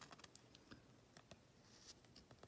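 Faint, scattered crinkling ticks of a soft plastic penny sleeve being handled as a trading card is slid into it.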